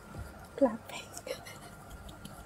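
A person's voice over a live video call: one short vocal sound about half a second in, with faint whispery voice traces around it.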